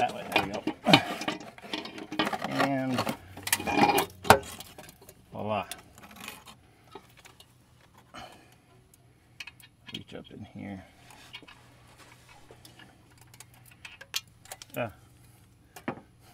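Light metal clinks and knocks as an aftermarket exhaust downpipe is held up and worked onto its flange studs under the car. Talk fills the first few seconds, with a few short remarks later.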